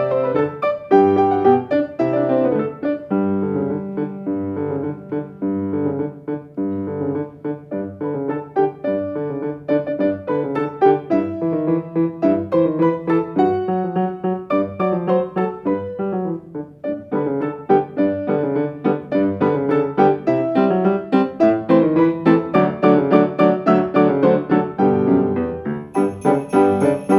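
Grand piano played four hands, a duet of steady rhythmic chords and melody. It grows louder and fuller about two-thirds of the way through.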